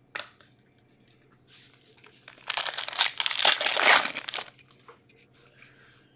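A hockey card pack's wrapper crinkling and tearing as it is torn open by hand. It is a burst of crinkly noise that starts about two and a half seconds in and lasts about two seconds.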